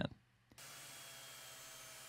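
Faint, steady hiss of background noise, starting about half a second in after a moment of near silence, with a few thin steady tones in it.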